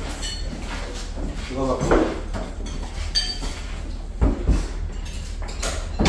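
Plates and cutlery clinking and knocking at a dinner table while people eat: short ringing clinks near the start and again about three seconds in, and a few dull knocks a little after four seconds, under a brief snatch of conversation.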